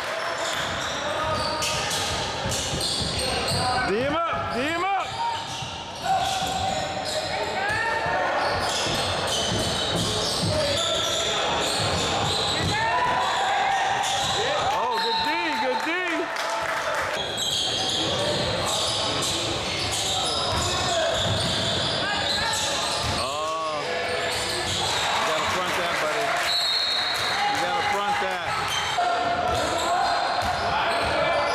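Basketball being dribbled and bouncing on a hardwood gym floor during play, with frequent short squeaks of sneakers on the court.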